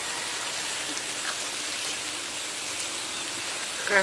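Water spraying from a garden hose nozzle onto frosted plants: a steady hiss.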